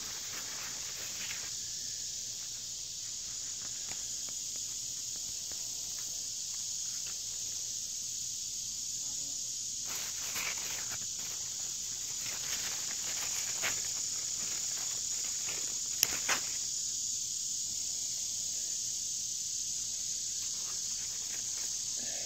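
Steady high-pitched insect chorus, with a few brief rustles of leaves being handled and one sharp click about two-thirds of the way in.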